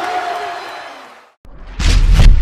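Arena crowd cheering and applauding after the final buzzer, fading out over about a second. After a brief silence, a broadcast graphics sting starts near the end with a loud swoosh and a deep boom.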